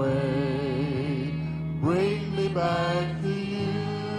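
Congregational worship song: a voice holding long sung notes with vibrato over steady instrumental accompaniment. A new phrase starts about two seconds in, and the bass note changes a little after three seconds.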